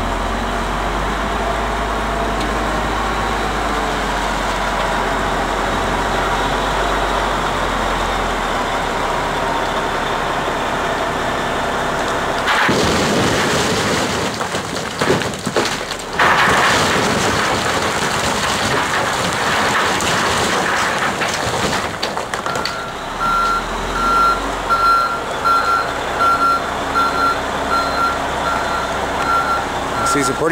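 Heavy diesel equipment running steadily, then about twelve seconds in a loud stretch of rock riprap crashing into the steel-and-plastic trailer bed, with sharp impacts, lasting around ten seconds. After that a backup alarm beeps steadily, over the engine.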